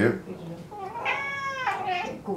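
Ragamuffin cat giving one long, drawn-out meow, starting a little over half a second in, in protest as its ear canal is swabbed with a cotton bud.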